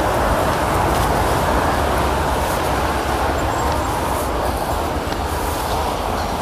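Steady roar of heavy road traffic on a busy multi-lane highway, an even, unbroken noise with a low rumble underneath.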